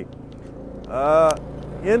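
Steady street traffic and riding noise on a night road, with a man's drawn-out vocal hesitation about a second in.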